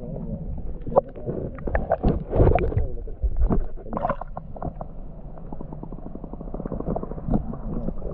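Muffled water heard from beneath the surface: gurgling and sloshing with irregular knocks and clicks, loudest about two to three seconds in.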